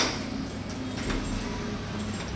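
Soft jingle of keys on a ring hanging from a key in a stainless round door-knob lock as the hand works the key and knob to unlock it.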